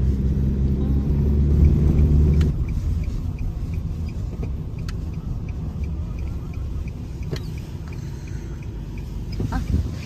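Road and engine rumble heard inside a moving car's cabin, loud for the first couple of seconds and then dropping off as the car slows, with a faint regular ticking through the middle.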